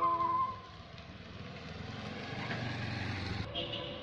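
Background music ends in the first second. It gives way to outdoor background noise, a low rumble that slowly builds and stops abruptly about three and a half seconds in.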